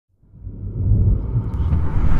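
A deep, low rumble fades in from silence about a quarter second in and swells steadily louder: a cinematic intro sound effect.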